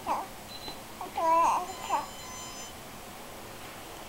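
A baby babbling: a brief sound right at the start, then a longer pitched, wavering vocal sound about a second in and a short one just before two seconds.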